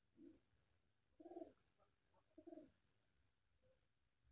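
Faint cooing of a pigeon: three short, low coos about a second apart.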